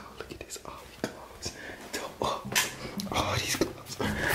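A person whispering or talking under the breath, with a few short knocks and clicks mixed in.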